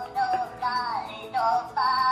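Minion novelty toy on a handheld stick playing high-pitched synthetic singing over a tune, with held and gliding notes.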